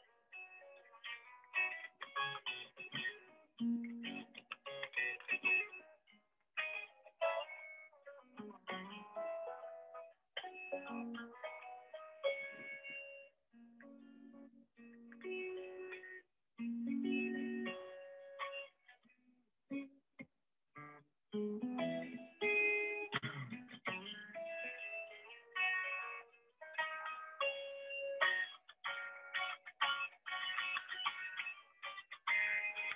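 Electric guitar played note by note in melodic phrases, with short pauses between them, heard thin over a video call.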